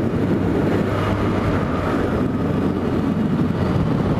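Motorcycle engine running steadily at cruising speed, with wind rushing over the microphone.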